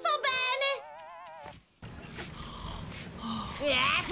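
A cartoon character's wavering, drawn-out vocal sound, which stops after about a second and a half. After a short gap a steady wash of sea and water noise follows, and a short "eh" comes near the end.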